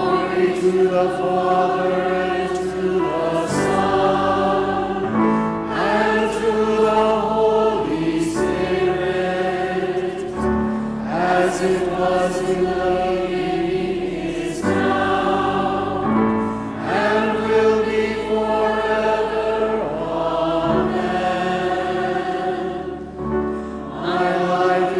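Choir singing a Vespers responsory in phrases a few seconds long, with brief breaths between them.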